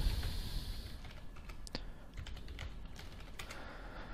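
Computer keyboard being typed on: a scattered, irregular run of faint keystrokes as a password is entered at a terminal prompt.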